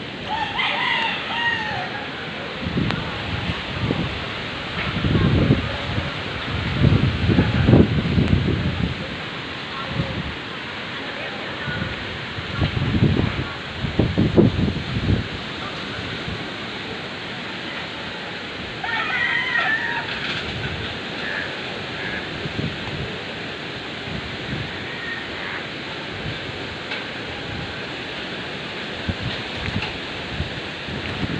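A rooster crowing twice, once near the start and again about twenty seconds in, over steady wind. Strong gusts buffet the microphone with a low rumble several seconds in and again around halfway.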